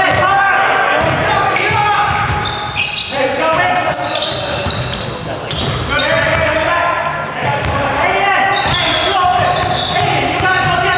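A basketball dribbled on a hardwood gym floor, its bounces echoing in the large hall, amid players' voices and short high-pitched squeaks.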